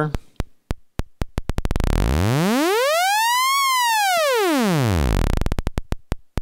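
Doepfer A-110 analog oscillator's sawtooth wave, swept in pitch by a slow sine-wave LFO. It starts as separate slow clicks below audible pitch, speeds into a buzz and rises to a high tone about three and a half seconds in, then glides back down to slow clicks.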